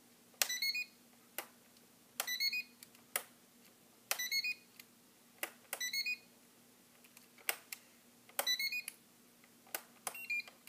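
Spektrum DX5E radio-control transmitter in bind mode, giving five short rising electronic beeps about two seconds apart, each with a click, with single sharp clicks between them.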